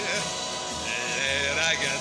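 Orchestra playing the accompaniment of a 1960s Italian pop song in a short instrumental passage between sung lines, with wavering vibrato tones and a voice-like sound over it.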